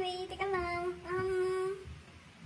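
A woman's voice singing three held notes on nearly the same pitch, the last the longest, stopping just before the end.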